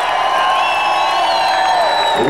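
Audience cheering and whooping, with a few long, steady held tones sounding over the crowd noise.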